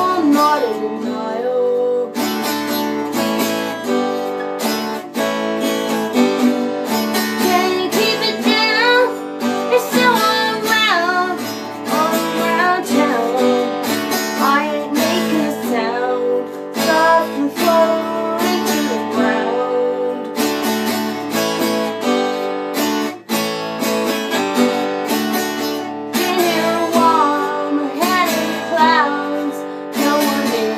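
A woman singing with her own strummed acoustic guitar accompaniment, the guitar chords running steadily under stretches of wavering vocal melody.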